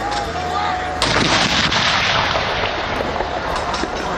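A towed field howitzer firing a ceremonial salute round about a second in: one sharp blast followed by a long echo that dies away over about two seconds.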